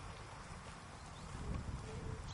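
Haflinger horse grazing, tearing grass and chewing, over a steady low rumble that swells about one and a half seconds in.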